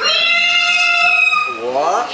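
A person imitating a cat's meow into a microphone: one long, high call held at a steady pitch for about a second and a half.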